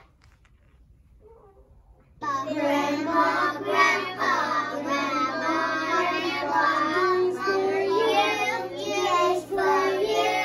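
A class of young preschool children singing together in unison. The singing starts abruptly about two seconds in, after a quiet start.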